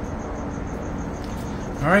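A cricket chirping in a rapid, even, high-pitched pulse over a steady low background hum.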